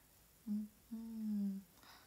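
A woman's voice humming twice at one steady pitch, closed-mouth: a short hum, then a longer held one.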